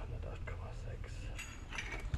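A few light metallic clicks and clinks of a steel steering rod and its adjusting clamp being handled and fitted, over a steady low background rumble.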